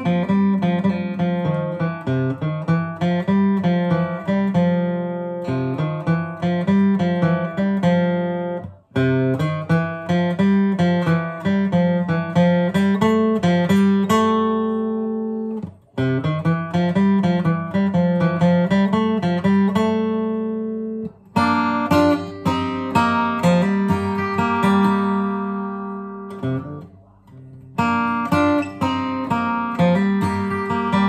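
Steel-string acoustic guitar flatpicked, playing quick runs of single notes mixed with chords. A few phrases end on a ringing chord, and the playing stops briefly about four times before picking up again.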